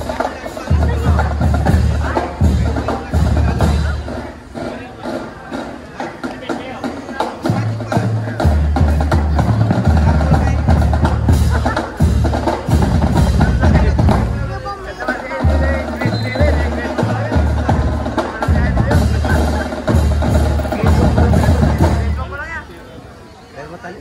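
Marching band playing a tune: wind instruments over a moving bass line, with bass drum and snare. The music stops right at the end.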